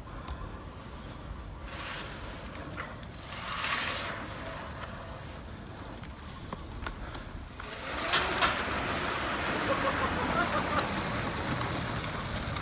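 Home-built electric go-kart driving up close on a concrete street: small tyres hiss on the pavement and a faint electric motor whine sounds, becoming louder from about two-thirds of the way in as it nears.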